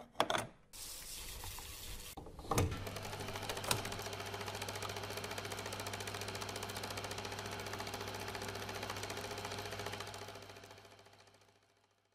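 A few clicks as a plug goes in, then a vintage reel-to-reel film projector starting and running: a fast, even clatter of its mechanism over a steady low hum, fading out near the end.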